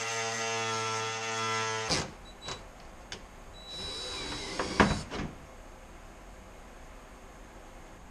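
Cordless power tools working a rusted, seized fender-flare screw: a motor runs with a steady whine for about two seconds and stops, then after a few clicks a cordless drill runs briefly about four seconds in, ending with a sharp knock.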